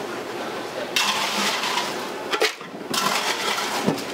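Ice cubes being scooped and poured into a clear plastic blender jar, in two noisy bursts: the first about a second in, the second near the end.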